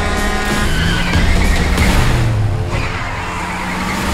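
McLaren 720S supercar engine revving hard with tyre squeal in a car-chase sound mix, under loud trailer music.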